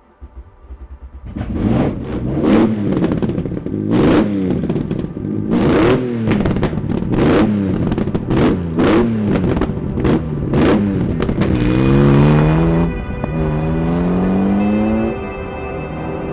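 Alfa Romeo Busso 3.2-litre V6 with individual throttle bodies, cranked on the starter and catching about a second in, then blipped sharply again and again. Near the end the revs climb in a few longer rising sweeps.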